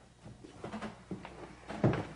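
A few faint clicks and knocks, then one louder sharp knock near the end.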